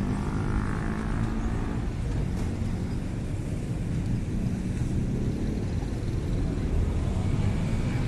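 Steady low rumble of street traffic on a busy city avenue.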